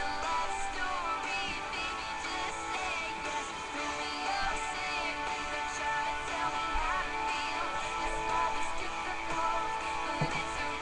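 Pop song playing: strummed guitar backing with a female voice singing the melody over it.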